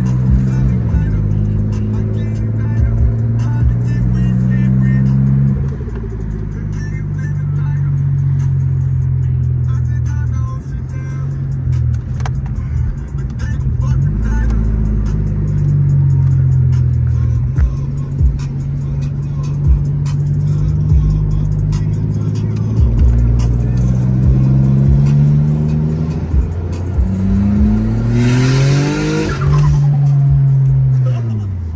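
Heard from inside the cabin, the turbocharged engine of a Nissan Stagea is pulling under acceleration, its pitch climbing and then dropping at each gear change several times. Near the end there is a loud hissing rush, then the engine pitch falls steeply as the throttle comes off.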